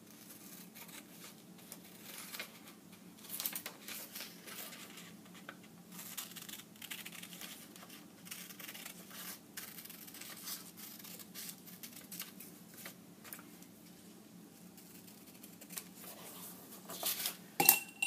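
Scissors snipping through thin paper: a run of faint, irregular snips with paper rustling, and one louder sharp knock near the end.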